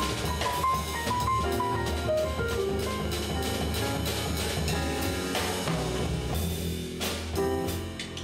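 A jazz piano trio playing live: a grand piano, an upright double bass and a drum kit.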